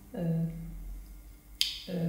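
A woman's voice holding a drawn-out hesitation sound on one flat pitch, then, about one and a half seconds in, a short sharp click before she speaks again.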